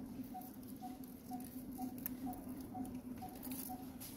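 Faint scattered clicks and rustles of macaques handling food among dry leaves. Under them runs a steady background pulse that repeats about twice a second.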